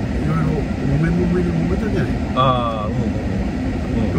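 Steady low rumble inside a car cabin with the engine running, under low conversational voices. About two and a half seconds in comes a brief higher-pitched sound with a sliding pitch.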